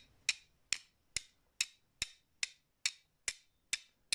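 Two flint stones struck against each other, nine sharp clicking strikes at an even pace of a little over two a second.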